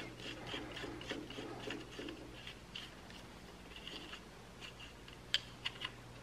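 Faint scraping and rubbing of a screwdriver working at the terminals and wires of a handheld winch controller switch, in many short strokes, with a few sharp clicks a little after five seconds in.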